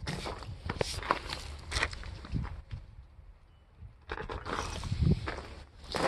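Footsteps on gravel, with a short quiet pause about halfway through.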